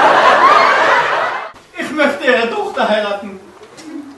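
Theatre audience laughing, a dense burst of many voices that dies away about a second and a half in. A single voice follows.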